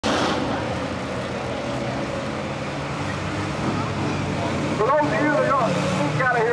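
Engines of a pack of front-wheel-drive stock cars running around the oval track, a steady drone. A man's voice begins speaking over it about five seconds in.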